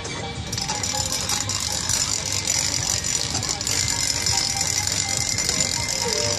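A steady rattling from a spinning bamboo-and-paper umbrella, starting about half a second in. Background music plays under it.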